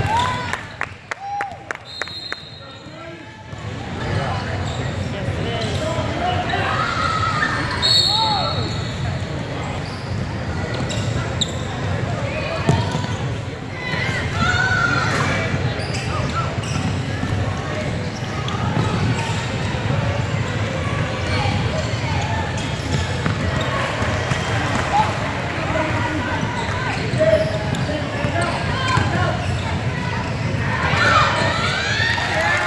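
Gym noise from a youth basketball game: a basketball bouncing on a hardwood court, with players' and spectators' voices echoing in a large hall. The first few seconds are quieter, with a run of sharp ticks, before the hall noise rises and stays steady.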